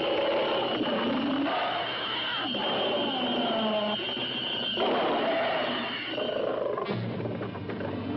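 Science-fiction film soundtrack: a high held tone, stopping a little after six seconds in, over low sliding cries that rise and fall like creature roars.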